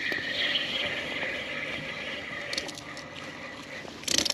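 A hooked speckled trout being reeled to the boat on a spinning reel, with a few faint splashes or clicks a little past halfway, over a steady high, even hum.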